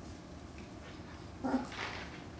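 A puppy whimpering, one short, high cry near the end.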